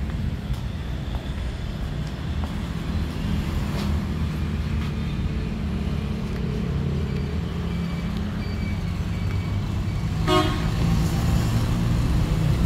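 A steady low engine rumble runs throughout, and a vehicle horn gives one short toot about ten seconds in.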